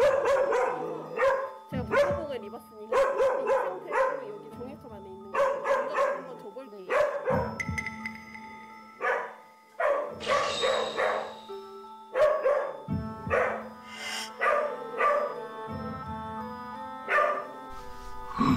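A dog barking repeatedly in short bursts, about one a second with brief pauses between volleys: warning barks at a stranger in a bite suit during an aggression test. Background music plays underneath.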